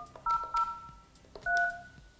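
Polycom desk phone keypad sounding DTMF dialing tones as a number is keyed in: the end of one tone at the start, then two short two-note beeps and a longer one near the end, with faint key clicks.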